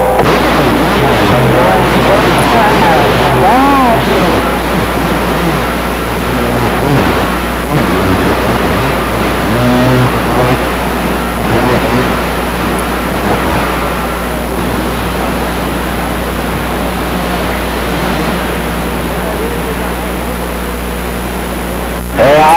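CB radio receiver hissing with static and band noise, with faint, garbled distant voices coming and going through it. The static eases off a little toward the end.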